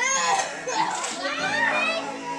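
A child's high-pitched excited voice in play, shrill calls that rise and fall without clear words, with music playing in the background.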